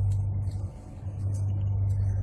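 A steady low hum runs throughout, with faint, scattered light handling sounds above it.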